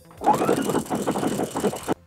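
Husqvarna sewing machine running at speed, sewing a stretch (lightning bolt) stitch through knit fabric: a fast, even rattle of needle strokes. It starts a moment in and cuts off suddenly near the end.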